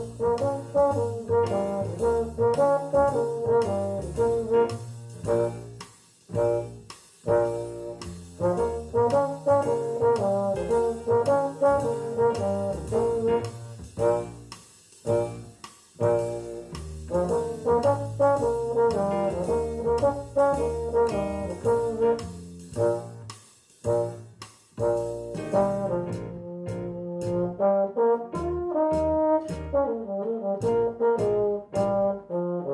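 A euphonium playing a jazz melody in phrases of quick changing notes, with short breaks for breath about six, fifteen and twenty-three seconds in.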